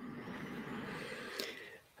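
A man breathing in audibly through his mouth just before speaking, with a small mouth click near the end.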